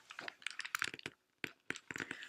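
Quick small crackles and clicks of a paper book being handled, dense for about a second, then a few scattered clicks.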